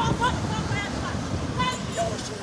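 Voices of people talking beside a road, over steady traffic noise from passing vehicles.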